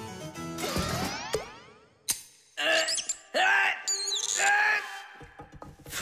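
A short cartoon music sting with sound effects. Sweeping pitch glides fill the first second or so, a sharp click comes about two seconds in, and a few short sliding tones follow.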